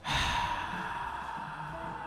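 A man's long, heavy sigh blown straight into a handheld microphone: a sudden breathy rush that fades away over about two seconds.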